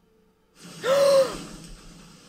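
A person's sharp, voiced gasp of shock, a short 'ah' that rises then falls in pitch, about a second in. It comes over a sudden hiss that starts just before it and carries on.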